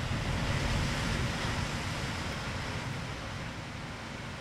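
Steady outdoor wind noise with no voices: a low rumble of wind on the microphone under an even hiss. It is loudest in the first second or two, then eases slightly.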